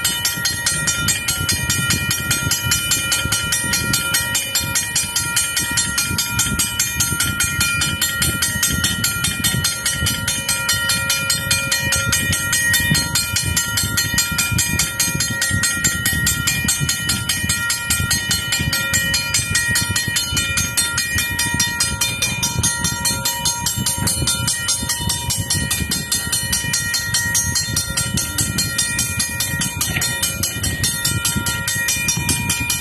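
2003 second-generation Safetran mechanical railroad crossing bell ringing continuously, its hammer striking a brass gong in a rapid, even rhythm. The gong's ring holds steadily between strokes.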